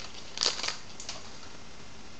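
A brief papery rustle of a stack of baseball cards being handled in the hands, about half a second in, with a smaller rustle about a second in.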